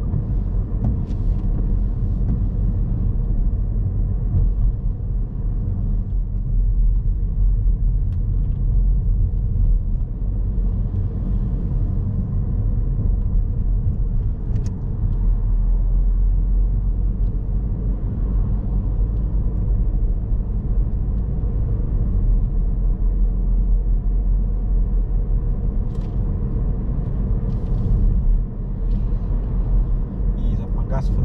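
Steady low rumble of a car driving at town speed, heard from inside the cabin: engine and tyre noise on the road, with a few faint ticks.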